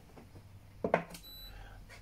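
Quiet room tone broken about a second in by a brief voiced sound from a man, a short grunt or 'hm', followed by a faint, short high-pitched tone.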